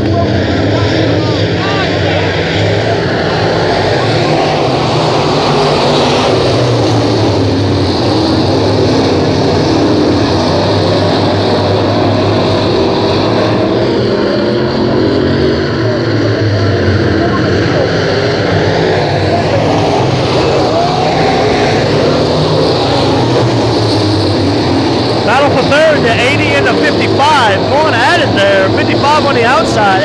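A field of 602 Sportsman dirt-track race cars, each with a GM 602 crate V8, running hard around a dirt oval. The engine notes rise and fall steadily as the cars power through the turns and pass the grandstand.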